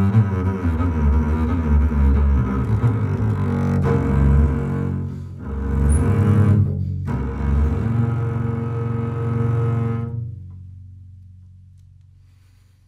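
Solo double bass played with the bow: a run of quick notes, then longer held low notes, the last one fading away over the final two seconds.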